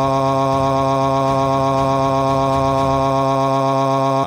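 A computer text-to-speech voice holding one long, flat 'aaaa' vowel at a man's pitch, never changing in pitch or loudness.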